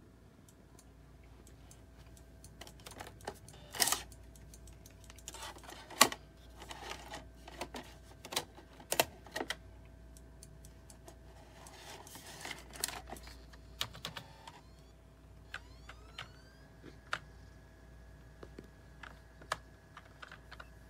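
Scattered clicks and knocks as a disc is loaded into the tray of an LG slim portable DVD writer. About fifteen seconds in comes a rising whine as the drive spins the disc up, settling into a steady tone.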